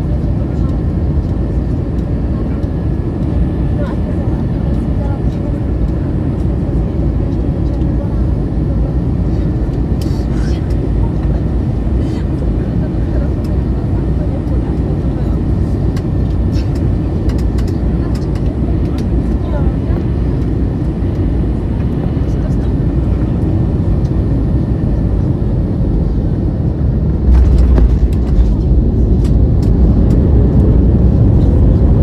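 Cabin noise of an Airbus A321neo on final approach: a steady low rumble of airflow and the Pratt & Whitney geared turbofan engines. About 27 seconds in it turns suddenly louder and deeper, with a few knocks, as the main wheels touch down on the runway.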